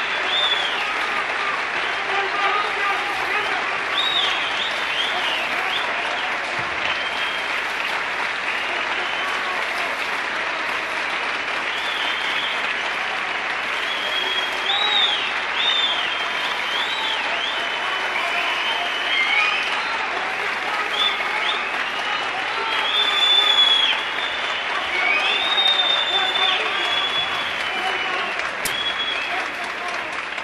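A concert audience applauding steadily, with cheers and repeated short rising-and-falling whistles, after the last song ends.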